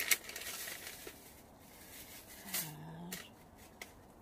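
Rustling and handling noises with a few light clicks, as things are rummaged through and moved by hand, with a short hummed "mm" from a voice just after the middle.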